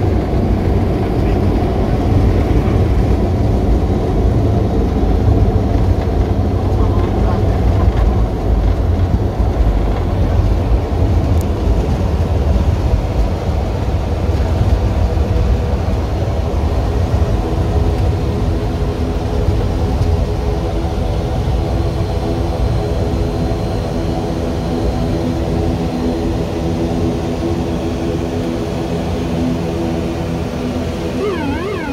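ATR 72-600 turboprop heard from inside the cockpit during the landing rollout: a heavy rumble of engines and wheels on the runway that eases as the aircraft slows. In the second half, steady propeller and engine tones come through.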